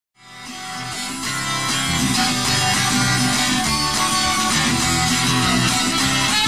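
Instrumental guitar intro of a live song, fading in over the first couple of seconds, then steady rhythmic strumming.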